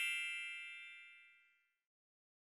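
A bright, bell-like chime sound effect, struck just before and ringing out as it fades, dying away about one and a half seconds in.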